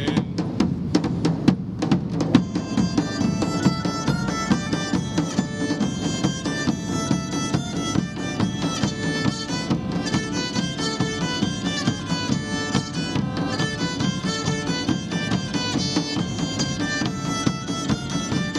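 Live Celtic folk band playing an instrumental passage: bagpipes and a bowed nyckelharpa carry the melody over large bass drums. Drum strokes open it, and the pipes and nyckelharpa come in fully about two seconds in.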